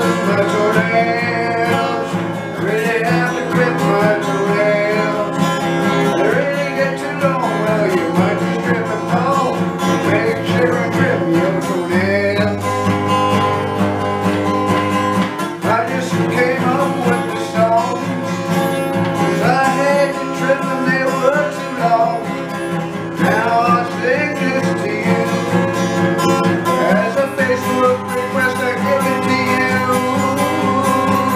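Acoustic guitar strummed in a steady country-style rhythm, with a man's voice singing along over the chords.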